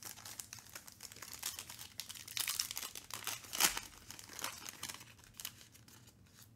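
Foil wrapper around an encased trading card being torn open and crinkled by hand: a dense run of crackles, loudest a little past halfway.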